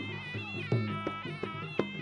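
Traditional Kun Khmer fight music: a nasal, wavering reed-pipe melody (sralai) over drum strokes.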